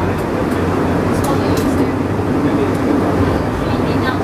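Penang Hill funicular car running on its rails, a steady rumble heard inside the cabin, with a few sharp clicks about a second in.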